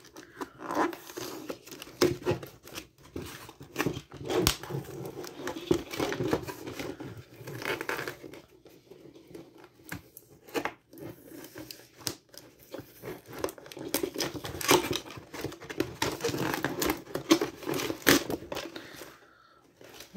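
Hands tearing open a taped cardboard toy box: irregular ripping, crinkling and crackling of the card and paper, with sharp little snaps as it gives. It goes briefly quiet near the end.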